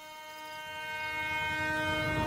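Train horn held in one long steady blast, growing louder as the train approaches, with the train's rumble rising underneath.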